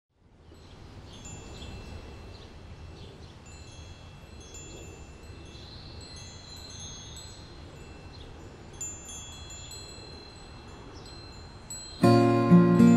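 Metal tube wind chimes ringing, scattered high clear notes that overlap and ring on, over a low steady rumble. The sound fades in over the first second.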